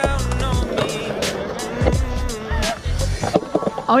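Skateboard wheels rolling over the concrete of a skatepark bowl, under background music with a beat.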